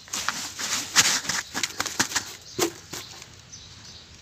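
Upturned container packed with wet, gritty charcoal-ash paste being tapped and worked loose, a run of sharp taps and knocks thickest about a second in, with a duller thump a little past halfway as it comes off the moulded mound.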